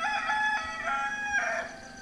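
A rooster crowing one cock-a-doodle-doo: a few short broken notes, then a long drawn-out last note that falls slightly in pitch.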